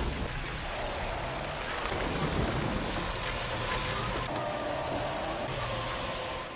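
Heavy rain and rushing river water with a truck engine running low underneath, a steady noise throughout.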